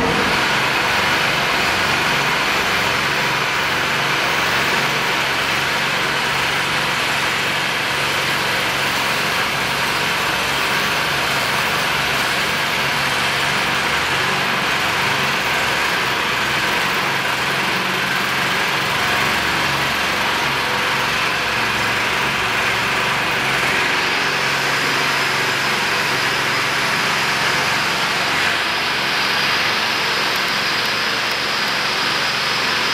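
A steady, unchanging mechanical drone with a hiss over a low hum.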